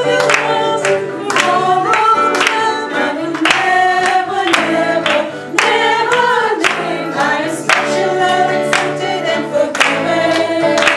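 A group of people singing a song together, with hand claps in time at about two a second.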